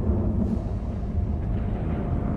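A steady deep rumble with a thin steady tone coming in near the end.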